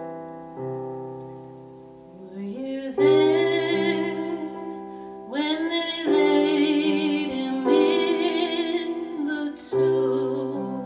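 A woman's solo voice singing a slow spiritual over piano chords, the voice entering about two and a half seconds in and holding long notes with vibrato.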